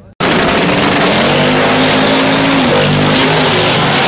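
Drag-racing car engine at full throttle, very loud and distorted, with a steady high engine note. It starts suddenly just after the start and cuts off abruptly at the end.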